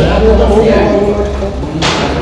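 Indistinct voices in a crowded pool hall, with a single sharp knock near the end.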